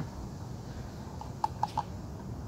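A few light clicks of small plastic bottle caps being handled and opened, about four in quick succession past the middle, over a low steady outdoor background.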